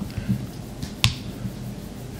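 A single sharp click about halfway through, over a faint steady low hum of room tone.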